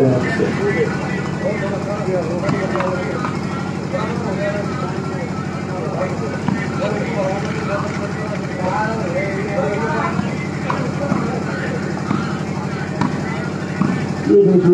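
Voices of players and spectators calling and talking around a volleyball court, over a steady low hum.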